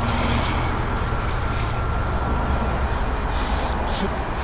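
Steady low rumble on the microphone with scattered rustles and clicks of clothing and rope as a man's wrists are tied to a wooden trestle.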